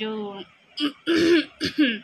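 A woman clearing her throat and coughing: three short bursts in the second half.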